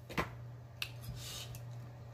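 Fingers handling a crispy fried chicken wing: a sharp click about a quarter of a second in, a smaller one shortly after, then a brief crackle of the coating, over a low steady hum.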